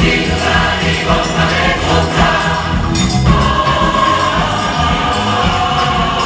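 Large choir singing, with notes held steadily through the second half.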